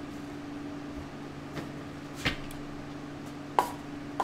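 Steady low hum, with two short sharp knocks in the second half, a little over a second apart, the second one louder.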